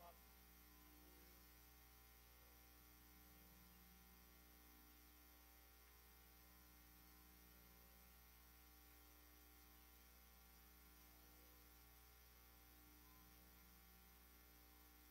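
Near silence, with a faint steady low electrical hum.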